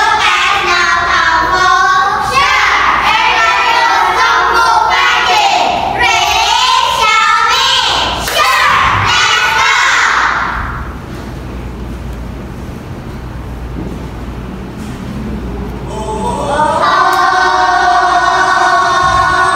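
A group of children singing together in unison for about ten seconds, then a quieter stretch. Recorded music with held notes starts about two seconds before the end.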